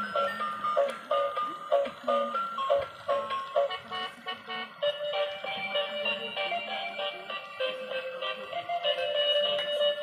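Battery-powered transparent light-up toy car playing its built-in electronic tune: a thin melody of short beeping notes that shifts to a different phrase about five seconds in.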